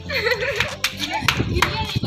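A few sharp hand claps over excited voices, with a wavering vocal sound near the start.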